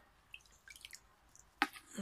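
Faint drips and small splashes of water in a plastic bucket of soapy water as a garden hose is held in it, with a sharp click about one and a half seconds in.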